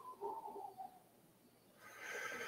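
Faint sounds of a man's voice and breath: a soft tone that falls in pitch and fades out about a second in, then a quiet breath near the end.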